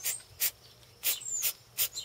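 Aerosol can of Flex Seal rubber sealant spraying in several short hisses, a fresh burst every few tenths of a second, coating clipped screw ends.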